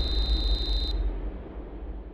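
Title-card sound effect: a deep rumble fading away, with a steady high ringing tone over it for the first second that cuts off suddenly.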